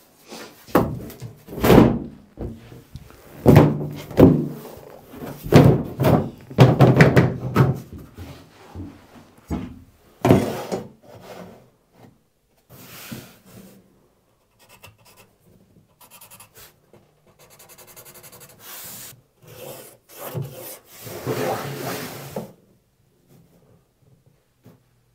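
A large plywood sheet being lowered onto a boat's floor frame and shuffled into place, knocking and scraping against the frame timbers in a dense series of thuds over the first ten seconds. Quieter scrapes and taps follow as the sheet is adjusted and marked out, with a longer scrape just before the end.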